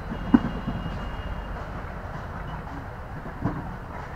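Steady low rumble of outdoor background noise, with one sharp click about a third of a second in.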